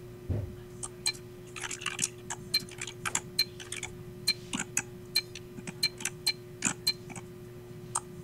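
Irregular computer mouse clicks and keyboard key presses, a few a second, as values are typed into a setup screen, over a faint steady hum.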